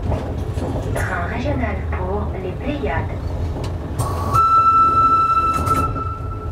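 Cab of the Beh 2/4 No. 72 electric rack railcar moving slowly, with a steady low running rumble. About four seconds in, a cab warning tone sounds: a steady electronic beep that steps up slightly in pitch after about half a second and is the loudest sound.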